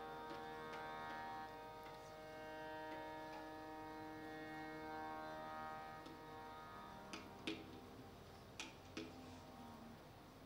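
Harmonium sustaining soft held notes that slowly fade, with a few light clicks in the last few seconds.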